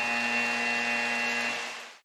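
Arena game horn sounding one long steady buzz at the end of the game as the clock runs out, cutting off about one and a half seconds in.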